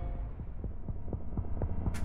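Tense film-trailer sound design: a low throbbing drone with a quick, regular ticking pulse, several ticks a second, building toward a sharp click right at the end.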